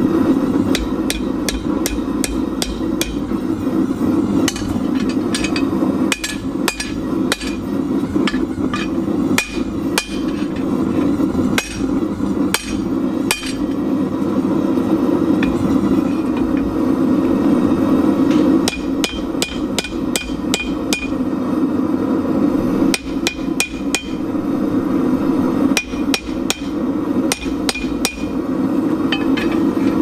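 Hand hammer forging a red-hot steel bar on an anvil, each blow ringing, in quick runs of about two to three strikes a second with a pause of a few seconds midway. Under it, the steady rush of a propane gas forge burner.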